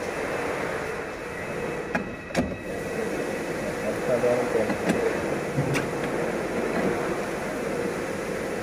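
Steady background hum with faint voices, and a few light clicks as the door's wiring and fittings are handled, about two and a half and six seconds in.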